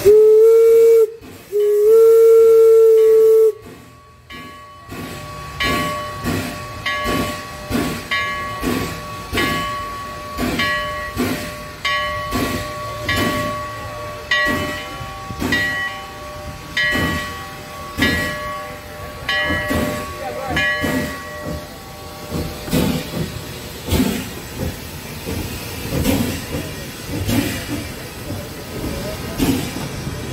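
Small 4-4-0 steam locomotive sounding two whistle blasts, the second longer, then chuffing at about two exhaust beats a second as it pulls its train away. A repeated ringing sounds over the chuffs until about two-thirds through, and the cars roll by near the end.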